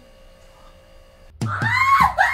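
Quiet room tone, then about a second and a half in a young woman breaks into a loud, high-pitched squeal with a wavering pitch.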